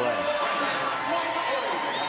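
Arena crowd cheering a point just won in a volleyball match: a steady, even roar of many voices.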